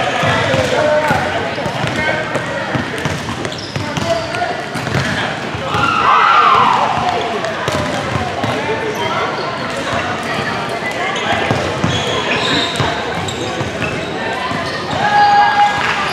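Many voices talking and calling out at once in a large, echoing gym, with the thuds of a basketball bouncing now and then; about six seconds in one voice rises over the rest with a falling call.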